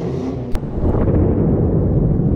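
Loud low rumble of an intro sound effect, with a sharp click about half a second in.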